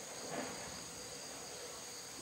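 Faint, steady high-pitched insect chorus, an unbroken drone of several high tones.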